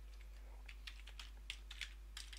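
Computer keyboard keys clicking faintly in an irregular run of keystrokes, typing out a directory path.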